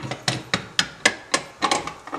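Stainless steel pressure cooker lid knob being twisted to lock the lid clamps, ticking in a steady run of sharp clicks, about four a second.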